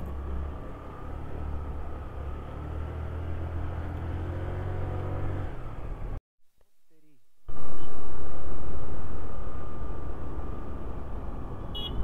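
A 2004 Honda Dio scooter's engine running while riding, under a steady low rumble of wind and road noise. The sound drops out about six seconds in, then comes back loud and slowly fades.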